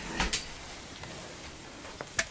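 Two quick knocks or clicks close together just after the start, followed by faint steady room tone.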